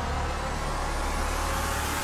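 Dark cinematic title-card sound design: a deep steady rumble under a rushing noise that grows brighter and fuller toward the end.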